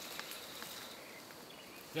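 Faint outdoor ambience: a steady low hiss with a couple of faint high chirps near the end.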